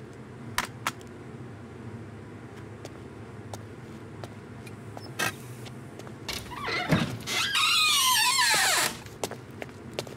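A wooden door's hinges squeal loudly as the door is pulled open, a long creak for about a second and a half that slides down in pitch. A few light clicks come before it.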